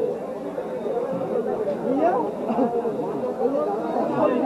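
Background chatter of several people talking at once, indistinct overlapping voices.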